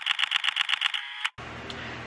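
Rapid burst of camera shutter clicks, about ten a second, lasting just over a second and cutting off suddenly.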